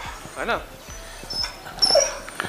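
A dog whimpering: one short whine that rises and falls about half a second in, then thin high-pitched whines near the end.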